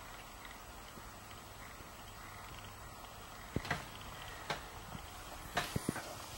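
A faint steady low hum, then a few short sharp clicks and knocks in the second half as the equipment and camera are handled.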